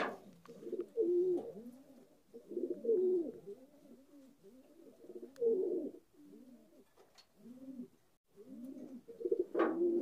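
Domestic pigeons cooing: a run of low, rising-and-falling coos in several bouts with short pauses between them.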